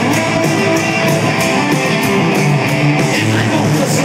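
Live rock band playing an instrumental passage: electric guitars over drums, with a steady beat of cymbal hits about three times a second. It is loud, as heard from among the audience.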